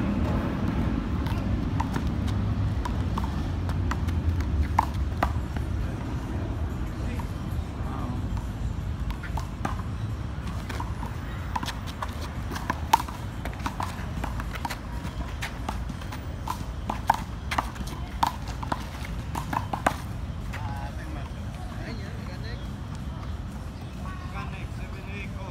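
Open-air city ambience: a low rumble of traffic that eases after the first few seconds, with many scattered short sharp clicks and knocks, thickest in the middle and later part, and faint voices.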